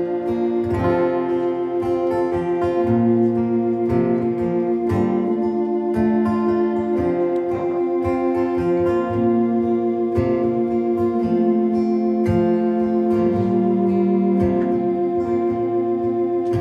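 Live band playing an instrumental passage with no singing: strummed acoustic guitar over a long held chord on a Roland VR-09 keyboard.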